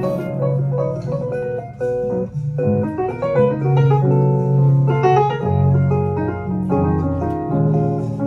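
Grand piano playing an instrumental jazz passage: quick runs of short notes over lower sustained notes.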